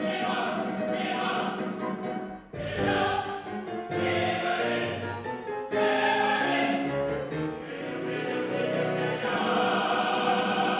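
Opera chorus and voices singing a drinking song, a toast to wine, with keyboard accompaniment. There are two sudden loud full entries, about two and a half and six seconds in.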